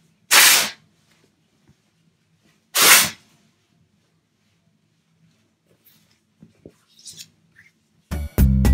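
Buffalo check fabric yardage torn by hand down its length: two short ripping sounds about two and a half seconds apart, followed by faint rustling of the cloth.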